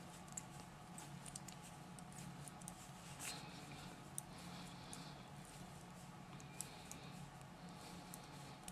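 Faint, irregular light clicks of metal knitting needles as stitches are worked in wool, with a soft rustle about three seconds in, over a low steady hum.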